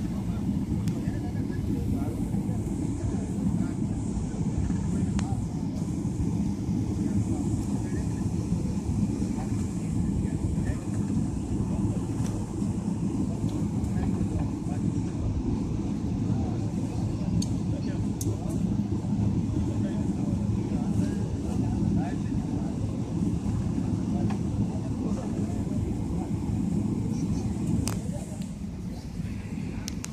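Steady low cabin drone of a Boeing 777-300ER taxiing on the ground, its engines at low thrust, unchanged throughout, with faint voices in the cabin.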